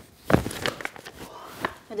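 A woman jolting awake on a bed: a few sharp thumps and short knocks, loudest about a third of a second in. A woman's voice begins right at the end.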